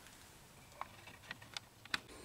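Quiet room tone with a few faint, light clicks in the second half, the last one near the end the sharpest; the surface grinder is not running.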